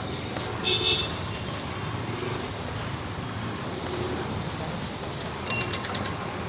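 Busy street traffic noise, with two short high-pitched sounds, one about a second in and one near the end.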